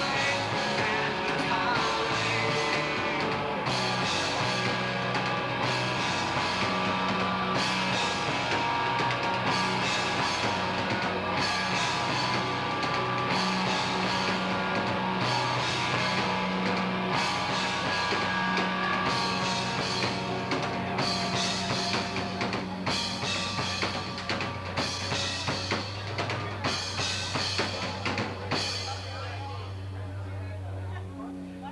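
Live rock band playing loud: distorted electric guitar, bass and drum kit, with a singer at the mic. About two seconds before the end most of the band drops out, leaving a held low bass note and a few drum hits.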